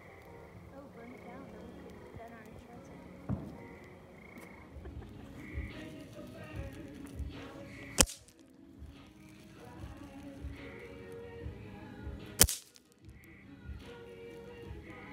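Two sharp firecracker bangs about four and a half seconds apart, over background music with a steady beat.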